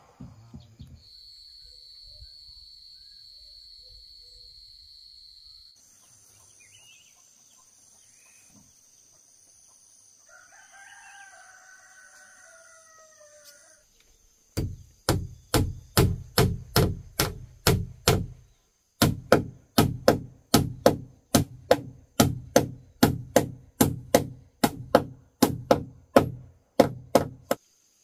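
A rooster crows once, over a steady high-pitched insect drone. Then a hammer drives nails into wooden floor planks in a steady run of sharp blows, about three a second, with one short pause midway.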